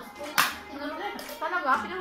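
Women's voices talking, with one sharp smack about half a second in, the loudest sound.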